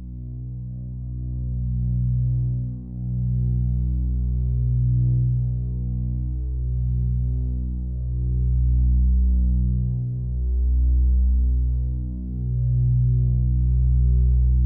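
A deep, steady low drone that swells and ebbs slowly in loudness, a throbbing hum with short dips about three seconds in and again near twelve seconds.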